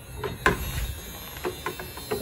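Clicks and knocks of a submersible battery shower pump and its hose and sprayer being handled in a plastic bucket of water, with a sharp click about half a second in and a few lighter ones near the end, over the pump's low steady hum. The pump keeps running and does not switch off from the sprayer.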